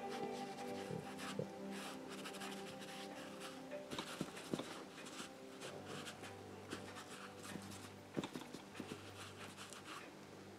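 Prussian blue oil pastel stick scratching across canvas in quick, repeated strokes, with faint background music underneath.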